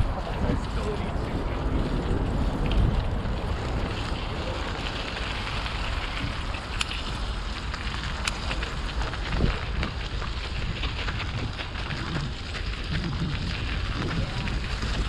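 Wind buffeting the microphone of a camera riding on a moving bicycle: a steady low rumble, with a couple of sharp clicks about seven and eight seconds in.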